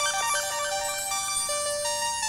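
Background music: a soft synthesizer keyboard melody of held notes, with a quick run of short high notes at the start.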